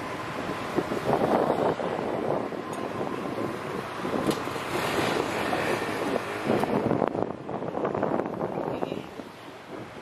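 Motorcycle ride through street traffic: wind buffets the microphone over the steady noise of the engine and passing vehicles, easing slightly near the end.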